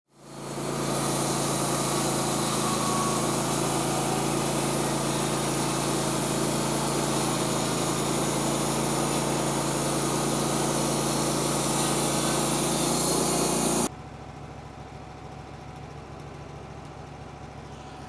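Wood-Mizer LT15 WIDE band sawmill running with its blade cutting through a small eastern red cedar log, a loud steady sound that stops abruptly about 14 seconds in. After that, a much quieter steady engine hum.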